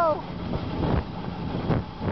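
Alpine coaster sled running fast on tubular steel rails, with an uneven rumble and rattle under wind on the microphone. At the very start, a held vocal note drops in pitch and breaks off.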